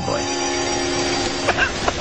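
A chord of several steady notes held together, cut off by a sharp click about one and a half seconds in, followed by a few short sounds.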